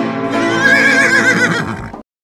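A horse whinnying over background music: one wavering, shaky call lasting about a second, after which all sound cuts off suddenly.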